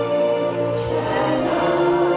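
A group of voices singing together in chorus with musical accompaniment, holding long sustained notes.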